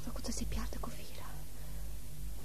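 A faint whispered voice during the first second, over a steady low hum.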